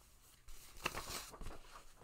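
Paper rustling and sliding as a paper insert is pulled out of an LP record sleeve and handled, starting about half a second in, with a few sharp crinkles.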